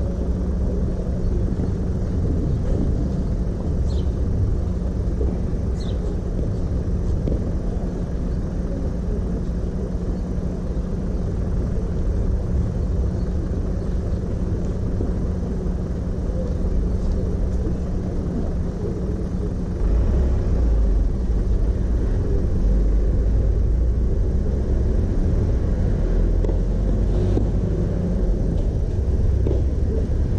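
Steady low rumble of outdoor background noise, with a low steady hum that fades about twenty seconds in as the rumble grows louder.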